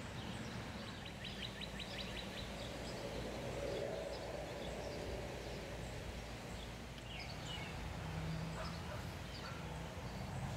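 Outdoor ambience of small birds chirping, with a quick trill about a second in and scattered short chirps later, over a steady low hum.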